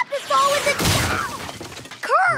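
Cartoon crash sound effects: a body tumbling into wooden bookshelves, books and a ladder, with two loud crashes, one near the start and one just before a second in. A short wavering vocal cry is mixed in between the crashes.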